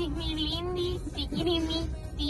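A high, child-like voice singing long held notes with a slight waver and a few pitch slides. A steady low rumble from the vehicle interior runs beneath.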